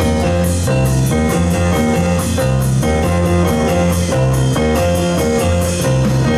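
Live band playing: electric bass, keyboard, electric guitar and drum kit, with cymbal strokes on a steady beat.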